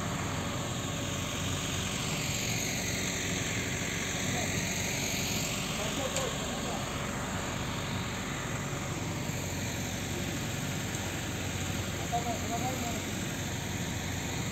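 Steady rushing background noise with a low hum, with faint voices coming through now and then.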